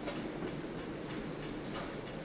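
A steady low rumble of room noise with a few faint, soft knocks scattered through it.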